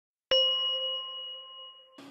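Logo sting: a single bell-like ding struck once near the start, ringing with a few clear tones and fading away over about a second and a half.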